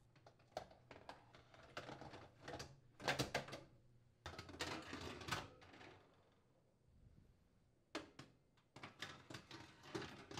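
Metal wire oven racks being slid into an oven cavity: faint metallic scrapes, rattles and clicks in short spells, with a quiet pause in the middle.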